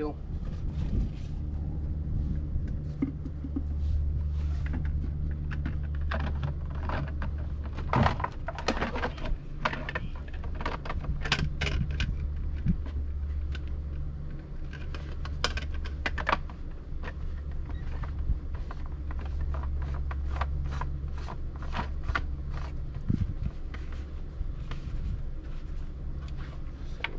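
Plastic clicks and knocks of a blue water-filter housing and its cartridge being handled and screwed together, over a steady low hum.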